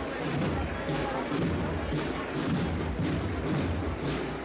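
Procession band drums playing deep, repeated beats with sharper strokes among them, over a murmuring crowd.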